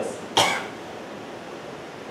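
A single short cough about half a second in, followed by low, steady room noise.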